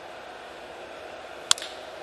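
A wooden baseball bat cracks once against a pitched ball about one and a half seconds in, a sharp single hit. Under it is the steady low background noise of the ballpark.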